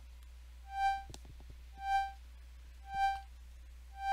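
Synthesized organ tone from Bitwig Studio's Organ device: one steady pitch pulsing in volume, four swells about a second apart, as a half-note LFO modulates it.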